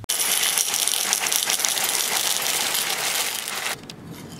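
Ring-shaped breakfast cereal poured from a plastic bag into a bowl: a loud, dense rattle of pieces hitting the bowl and each other, which stops suddenly near the end.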